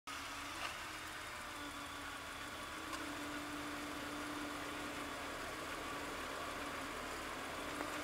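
Jeep Wrangler engine idling steadily, faint under an even hiss.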